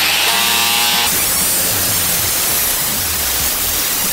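Angle grinder with a sanding disc running and grinding mill scale off a hot-rolled steel bar that has been treated with muriatic acid, throwing sparks. A whining motor tone in the first second gives way to steady grinding noise.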